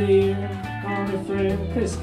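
Live band music: an acoustic guitar played over bass notes, with a voice singing.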